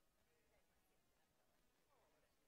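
Near silence: a faint, steady background hiss.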